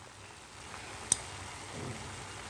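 Chicken pieces sizzling faintly in a metal pot on the stove, with a single sharp click of a metal spoon against the pot about a second in.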